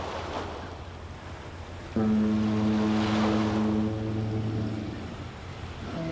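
Logo sting: a wash of ocean-wave noise, then about two seconds in a loud, deep, horn-like chord that comes in suddenly and dies away over a couple of seconds; a second chord starts at the very end.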